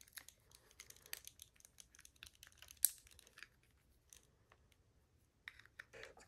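Faint clicks and rustles of a plastic action figure being handled while its tail piece is pushed at its socket, with one sharper click nearly three seconds in; the tail is hard to fit.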